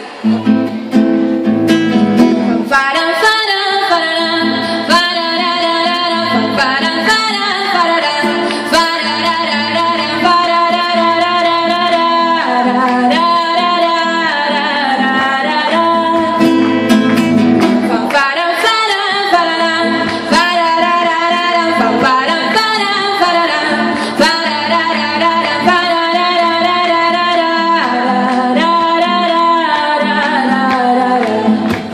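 A woman singing her own song while strumming a classical guitar. The guitar starts alone and her voice comes in about two and a half seconds in.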